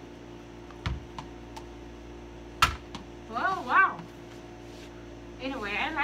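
Small toy basketball play: a dull thump about a second in, then a single sharp knock about two and a half seconds in, the loudest sound, typical of the ball striking the toy hoop's plastic backboard. Short rising-and-falling vocal sounds follow twice, the second running into laughter.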